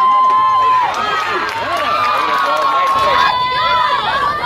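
Many voices of players and spectators at a softball game shouting and cheering over one another, with long drawn-out yells, one early and a longer one in the middle.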